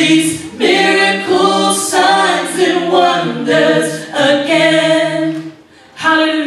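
Gospel vocal group of three women and a man singing a cappella in harmony through handheld microphones, a series of held, sustained phrases with brief breaks between them.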